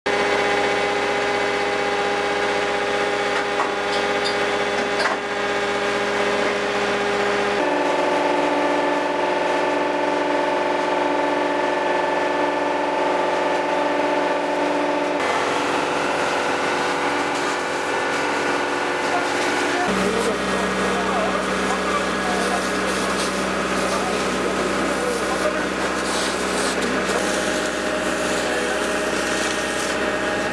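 A fire engine's motor running steadily. Its pitch jumps to a new steady level at cuts about 8, 15 and 20 seconds in.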